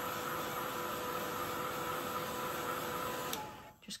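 Craft heat tool running, a steady fan whirr with a motor whine, blowing hot air to dry ink on card. It is switched off a little over three seconds in and winds down briefly.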